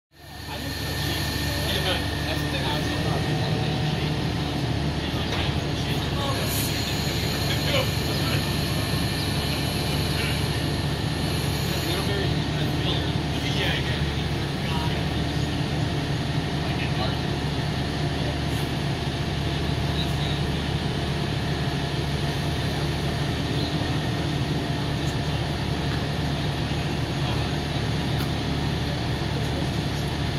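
Fire apparatus diesel engine running steadily at a constant speed, driving the aerial ladder's hydraulics while the ladder is worked. Faint voices and occasional small clicks sound over the engine.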